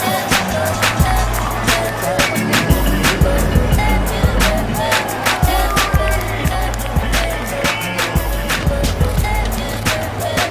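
Background music: a steady drum beat over a heavy bass line, with short repeated melodic notes.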